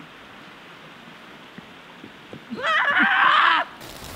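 Faint steady background hiss, then, about two and a half seconds in, a person's loud vocal call lasting about a second.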